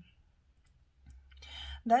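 About a second of near silence, then a short, soft, noisy in-breath that swells just before a woman starts speaking again at the end.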